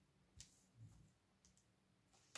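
Near silence, with one faint sharp click about half a second in and a few softer ticks later: tarot cards being handled and laid on a marble table.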